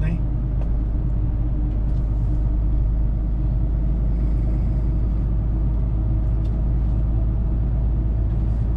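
Steady low rumble of a truck's engine and road noise, heard from inside the cab while driving on the highway.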